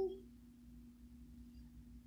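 Quiet room tone with a faint, steady low hum, just after the tail end of a spoken word.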